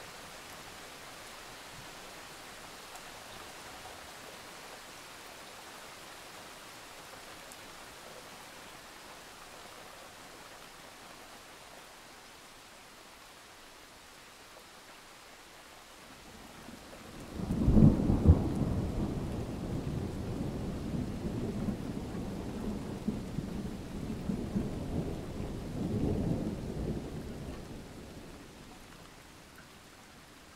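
Rainfall on a thunderstorm soundtrack: steady, fairly soft rain, then a little over halfway through thunder breaks with a sudden loud clap. The deep rumble rolls on for about ten seconds, swells once more, then dies away near the end.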